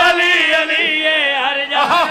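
A man chanting a majlis recitation in long, wavering held notes, amplified through a microphone, with a brief break near the end.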